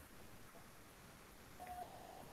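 Near silence: faint background hiss on an online call, with a faint steady beep-like tone that starts near the end.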